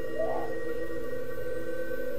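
Dark ambient background music: a steady drone of sustained tones with no beat.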